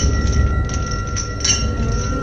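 Dark horror-film sound design: a heavy low rumble under a single sustained high tone, with faint irregular ticks above.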